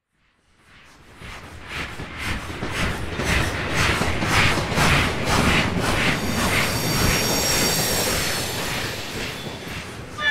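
A train passing: wheels clacking over rail joints about three times a second, swelling up from silence over the first couple of seconds into a loud rumble. About six seconds in, a high, steady squeal of the wheels joins the clatter.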